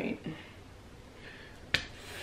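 A single short, sharp click about three quarters of the way through, over quiet room tone, after the last bit of a spoken word at the very start.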